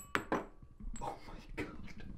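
A few light clicks and knocks as a hacksaw is lifted away from a freshly cut bicycle fork steerer tube held in a bench vise, the sawing having just stopped, with a short exclamation in between.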